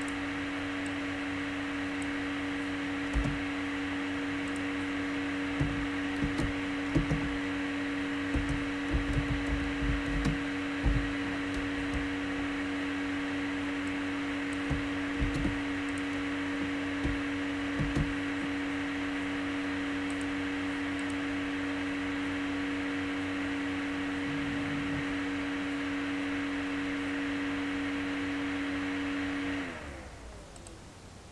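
A steady electric motor hum with a clear low tone, which slides down in pitch and stops near the end, as a motor spinning down. Scattered keyboard clicks and knocks over it, mostly in the first half.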